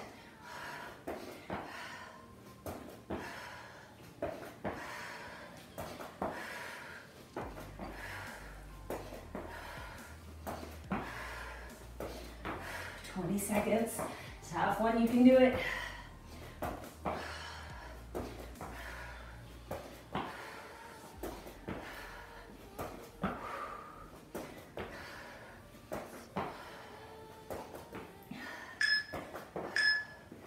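A woman breathing hard through a set of pivot squats, with soft footfalls on a mat about once a second. About halfway through she makes a short voiced sound.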